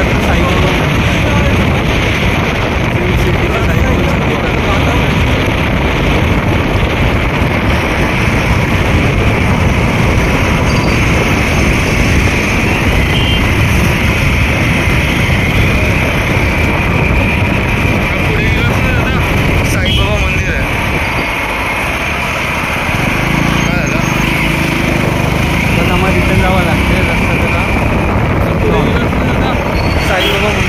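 Steady wind and road noise from riding a motorcycle at speed, the rushing air loud on the microphone. It dips a little about two-thirds of the way through.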